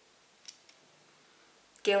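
A sharp click about half a second in and a fainter click just after, from a makeup brush and plastic eyeshadow palette being handled; a woman starts speaking near the end.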